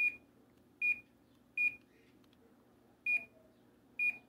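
Samsung split air conditioner's indoor unit beeping to acknowledge remote-control commands: about five short, high single beeps, irregularly spaced roughly a second apart, one for each button press.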